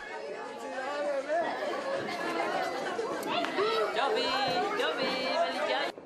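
Several people talking at once, their voices overlapping in lively chatter as family members exchange greetings.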